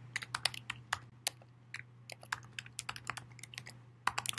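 Typing on a computer keyboard: a quick, irregular run of light keystrokes over a faint, steady low hum.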